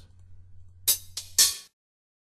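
Sampled hi-hat hits from the Kontakt Battle Drums library, triggered from a MIDI keyboard: three short, bright strikes in quick succession about a second in, the last the loudest.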